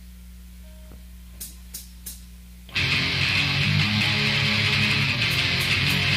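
A low steady hum with three faint clicks, then a rock band starts abruptly a little under three seconds in, led by loud distorted electric guitar in a heavy-metal style.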